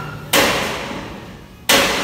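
Two heavy blows about a second and a half apart, each sudden and loud, then fading away over about a second.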